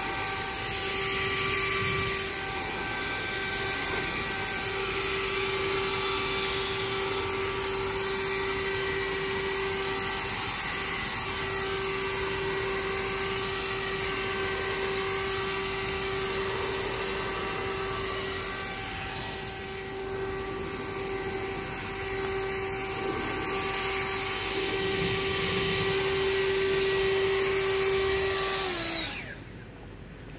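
Battery-powered leaf blower running with a steady whine over the rush of air as it blows snow off a car. About a second before the end the motor winds down, its pitch falling, and it stops.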